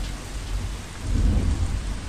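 Steady rain falling, with a low roll of thunder swelling about a second in.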